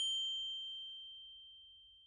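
A single high, bell-like ding used as a transition sound effect. It is struck just before this point and rings on one clear tone, fading slowly away.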